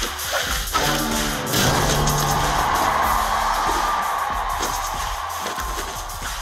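Film score music, swelling into a loud sustained passage about a second and a half in, then slowly easing.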